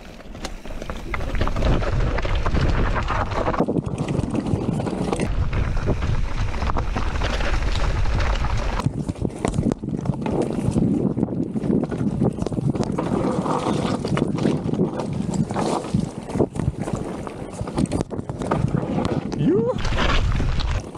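Green Vitus Sommet 29 enduro mountain bike ridden fast down a loose, rocky trail: tyres crunching over stones and the bike rattling with many small knocks, under heavy wind buffeting on the camera microphone.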